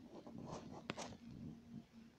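Faint rubbing and tapping on a tablet's touchscreen as calligraphy strokes are drawn, with two sharper clicks about half a second and a second in, over a low steady hum.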